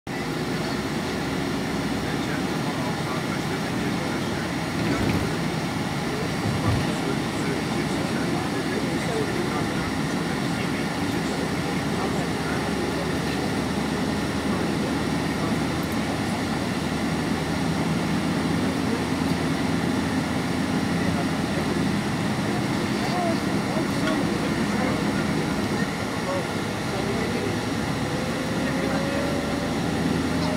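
Steady engine and road noise inside a moving vehicle's cabin: a continuous low drone over tyre rumble. There is a faint rising whine near the end.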